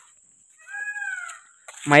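A peacock (Indian peafowl) gives a single call lasting under a second, falling in pitch at its end.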